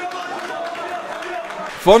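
Voices from the pitch and stands of a small football ground: players and spectators calling out, heard at a distance. A male commentator starts speaking close up near the end.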